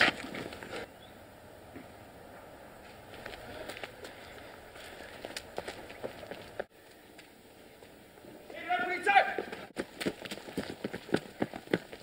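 A short shout, then quick running footsteps, about three or four steps a second, starting about ten seconds in.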